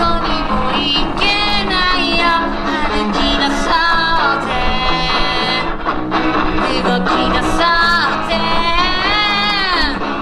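Live rock band: a young man singing over a Gibson Flying V electric guitar and drums, ending on a long held note that slides up.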